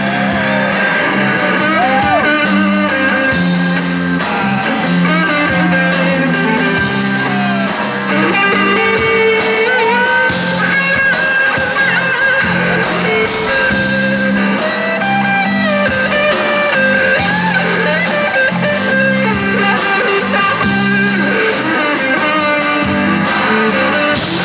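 Live band music led by a strummed acoustic guitar, loud and steady throughout.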